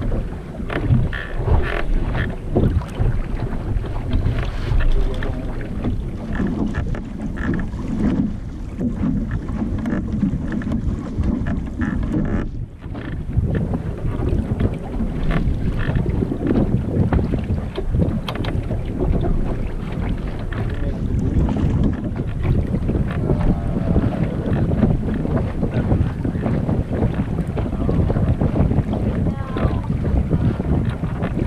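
Wind buffeting a small camera's microphone, with water rushing and slapping along the hull of a sailboat under way. The noise is steady and loud, with one brief lull about halfway.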